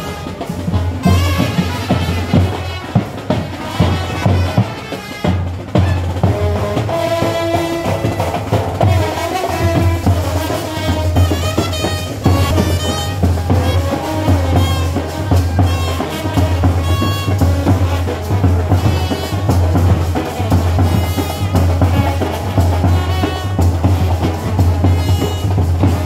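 Indian street brass band playing a tune on trumpets and horns over a steady, loud drum beat.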